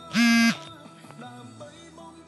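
Faint background music with sustained notes. Just after the start, a loud single buzzy tone at a steady pitch sounds for about a third of a second: an iPhone notification alert as a new notification arrives.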